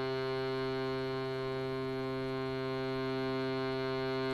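Shruti box drone: its reeds sound a steady, unchanging tone rich in overtones.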